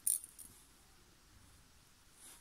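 Small pearl beads clicking together in a quick cluster of light clicks right at the start, as a bead is picked up for threading onto a beading needle.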